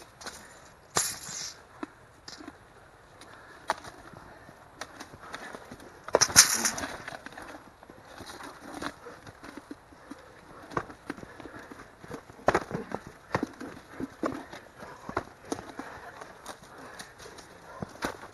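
Two fighters grappling in a standing clinch: scattered scuffs and light thuds of feet shifting on grass and bodies and gear pressing together, with brief rustling bursts, the loudest about a second in and about six seconds in.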